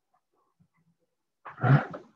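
Near silence, then a man's short, hesitant "uh" near the end.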